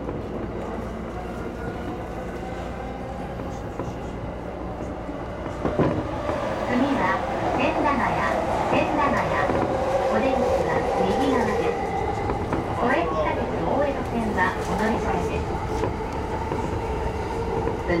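E231-series electric commuter train running along the track, heard from inside: a steady rumble of wheels on rail with scattered clicks, growing louder about six seconds in.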